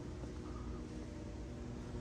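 Faint, steady background hum and noise with no distinct events: room tone.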